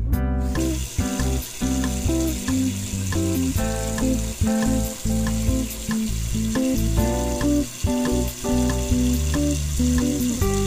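Tap water pouring steadily from a kitchen faucet into a stainless-steel pot of meat and vegetables. The hiss starts about half a second in, as the tap is turned on. Background acoustic guitar music plays throughout and is as prominent as the water.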